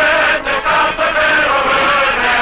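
Choir singing with music, in long held notes that move from pitch to pitch.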